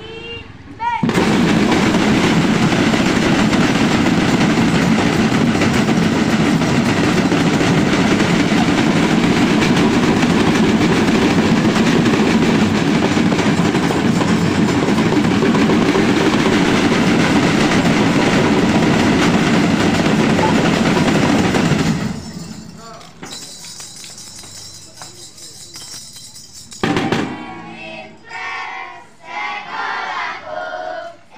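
A school drum band's snare drums played together in a dense, continuous roll, loud and without a clear beat. It starts about a second in and cuts off abruptly about three-quarters of the way through, followed by children's voices.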